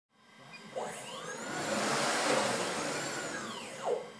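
Gazelle motion control camera crane's electric motors whining through a high-speed move. The pitch climbs for about two seconds, then falls again as the move slows, with a short sharp peak just before the end.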